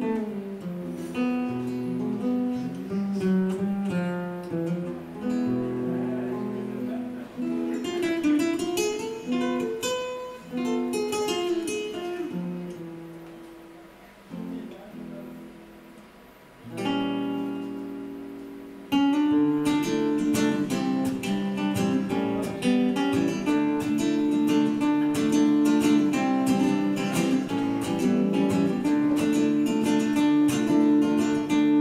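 Solo acoustic guitar played without vocals: picked single notes and chords at first, growing softer around the middle with a chord left ringing, then from about two-thirds of the way in a louder, steady, rapid strumming.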